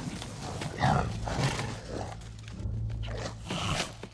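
Uruk-hai growling and snarling in short, irregular outbursts, over an orchestral film score.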